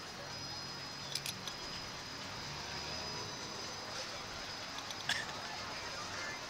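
Steady wind rush over the microphone of a camera on a Slingshot ride capsule as it swings through the air, with a few short sharp clicks or rattles about a second in and again near the end.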